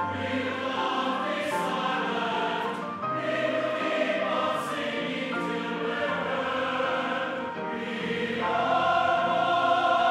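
A choir singing slow, sustained chords. The music changes chord about three seconds in and swells louder at about eight and a half seconds.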